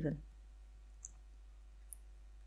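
Two faint, short clicks about a second apart, over a low steady hum.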